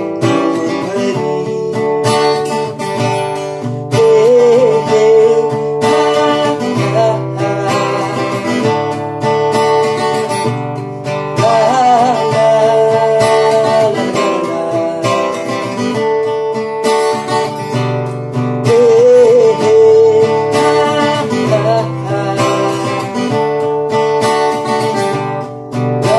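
A man singing while strumming chords on an acoustic guitar, the strumming steady and the voice rising and falling above it.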